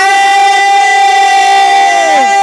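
A man's voice holding one long, steady sung note of a naat, with no wavering in pitch.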